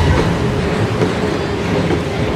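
Ominous horror film score: a loud, dense rumbling drone with one steady held tone running under it.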